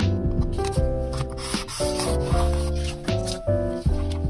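Light piano background music, and about halfway through a short scratchy rustle of paper as a paper sticker is laid on the journal page and rubbed down.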